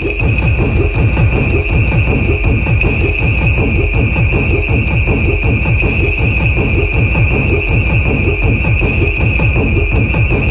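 Electronic music from a DJ mix: a fast, dense, bass-heavy beat with a steady high-pitched tone held over it and a short sweeping sound higher up repeating about once a second.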